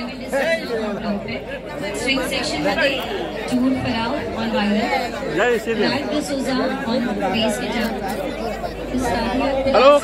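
Chatter of many people talking at once around tables, with overlapping voices and no single voice standing out.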